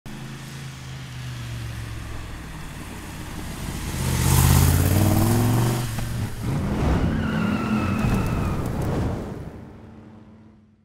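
V8 engine of a Backdraft Cobra replica (Roush 427 stroker) running through polished stainless side pipes as the car drives by, growing to its loudest about four to five seconds in. It breaks off briefly near six seconds, then revs up again in rising pitch and fades away near the end.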